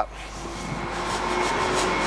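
A motor vehicle approaching, its engine and road noise growing steadily louder, with a faint steady engine tone underneath.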